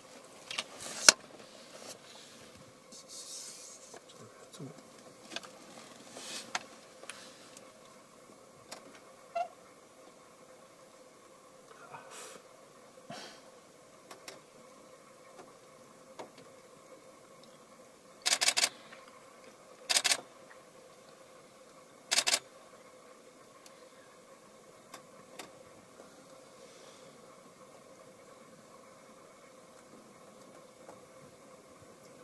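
Vultures squabbling at a carcass: scattered short, harsh noisy bursts, with three loud ones close together partway through, the first a quick run of pulses. A faint steady hum lies underneath.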